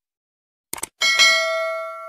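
Subscribe-button animation sound effects: a quick double mouse click, then a bright notification bell ding about a second in that rings on and slowly fades.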